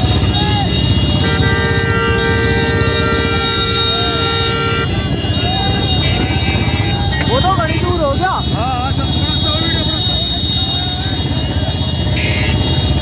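Vehicle engines and road noise with a steady low rumble, under loud shouting voices that are busiest a little past the middle. A horn sounds for about three and a half seconds, starting about a second in.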